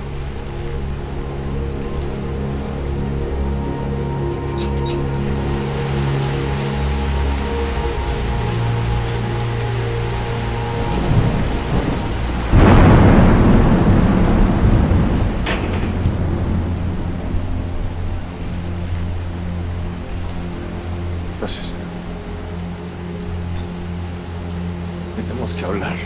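Background music score of held low notes over steady rain. About twelve and a half seconds in, a sudden thunderclap rumbles and fades over about three seconds, the loudest sound here.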